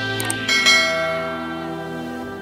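Outro background music with a subscribe-button animation sound effect laid over it: a short click about a quarter second in, then a bell chime that rings out from about half a second in.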